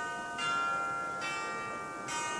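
Bell-like chime notes of an outro logo jingle: a new note is struck about half a second in and another a little after a second, each ringing on over the last.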